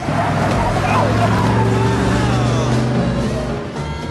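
Pickup truck pulling away: its engine runs loudly and steadily, with tyre noise on the road.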